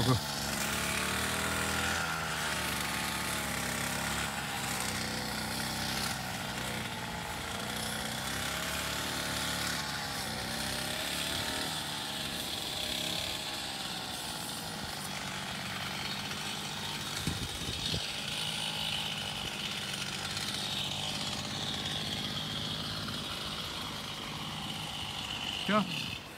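A small petrol engine of a garden power tool runs steadily throughout, its pitch wavering slightly up and down.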